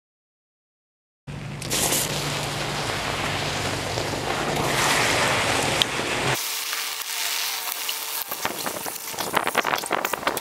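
After about a second of silence, scorched corn syrup sizzling and crackling under freshly poured molten aluminum, a dense steady hiss. After a cut about six seconds in it turns to sparser crackles and pops, which grow busier near the end as water starts being poured onto the hot metal.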